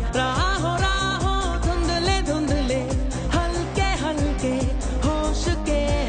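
A Bollywood-style Hindi pop song: a melody sung over a steady beat with heavy bass.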